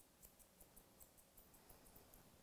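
Curved grooming shears snipping through a Wheaten Terrier's leg coat: faint, quick snips, about four or five a second.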